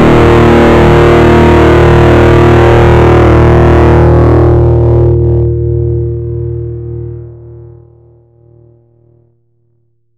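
Heavily distorted, fuzzed electric guitar with a big gain boost, ringing out loud and sustained for about four seconds, then losing its treble and dying away. Near the end the tail is cut off fairly abruptly by a downward expander set at a 3.5 ratio, with the gating clearly audible.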